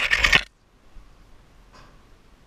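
A short metallic jangle of the climber's hardware, clips and rings shaking, lasting about half a second, with a much fainter rattle near the end.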